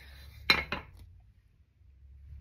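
A small jar of carborundum grit with a metal-rimmed lid set down on a wooden tabletop: one sharp clink about half a second in, then a lighter knock.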